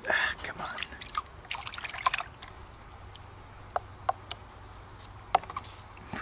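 Muddy water splashing and pouring as a glass jar is dunked and swished in a plastic gold pan over a bucket of water, washing out thick, sticky concentrate. Busy splashing for the first two and a half seconds, then a few light knocks.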